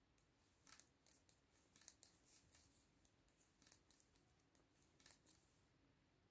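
Faint, irregular clicking of metal-tipped circular knitting needles as stitches are knitted, about a dozen soft ticks over a few seconds against near silence.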